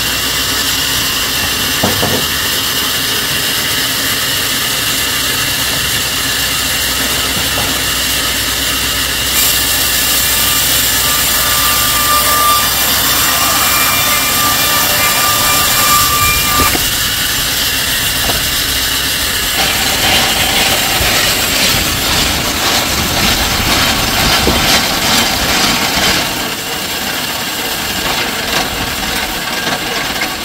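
Sawmill saw cutting through wood: a loud, steady, noisy run with a thin whine through the middle. The level drops near the end.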